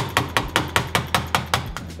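Rapid light taps of a hammer on a small metal wedge tool driven under the stop cap of an Öhlins TTX coil shock held in a vice, about five taps a second, working the cap loose.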